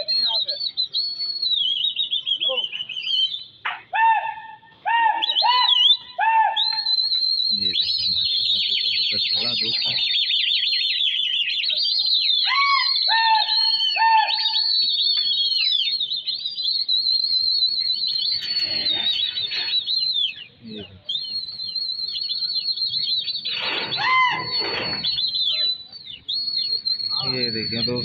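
Continuous high, rapid chirping and twittering of birds, with short groups of three or four lower whistled notes twice in the first half and shouting voices now and then.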